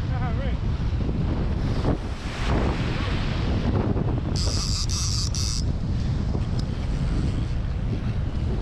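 Strong wind buffeting the microphone in a steady low rumble, with surf behind it. About halfway through come three short, high-pitched rasping bursts.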